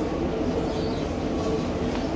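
Diesel passenger train heard from inside the coach while it runs along the line: a steady rumble of engine and wheels on the rails, with a thin steady whine running through it.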